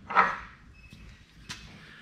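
A short, loud clank of a heavy steel bending die being handled at the U-bolt bender, then a single faint click about a second and a half in.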